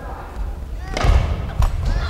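Air-filled foam sports chanbara swords striking: two sharp thuds, the louder about a second in and another just over half a second later.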